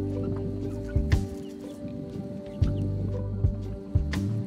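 Chickens clucking softly, short scattered calls, over background music with sustained chords, a low bass line and a few sharp percussive hits.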